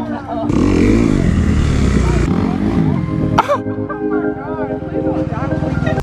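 Dirt bike engine running, mixed with background music and voices; a sharp click comes about three and a half seconds in.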